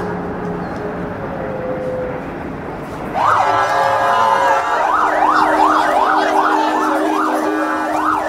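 A street noise bed for about three seconds; then an emergency vehicle siren cuts in with a rising wail and switches to a fast up-and-down yelp, about two to three cycles a second.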